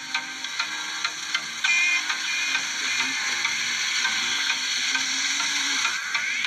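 Background music with a light ticking beat, about two to three ticks a second, over a low held tone. A steady hiss comes in sharply about two seconds in and carries on under the music.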